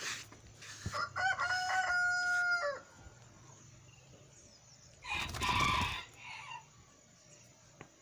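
A rooster crows once, a held pitched call of about two seconds that drops at its end, starting about a second in. Later a separate rushing burst of noise lasts about a second.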